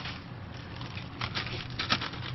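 Plastic zip-top freezer bag of frozen food scraps crinkling as it is handled and pulled open, a cluster of sharp crackles in the second half, loudest near the end.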